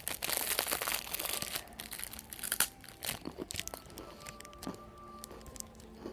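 Clear plastic biscuit wrapper being torn open and crinkled in the hands, a dense crackle for the first second and a half, then scattered sharp crackles.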